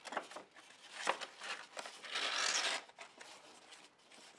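Folded sheets of scrapbook paper handled and slid through one another: light rustles and crinkles, with a longer sliding rustle about two seconds in.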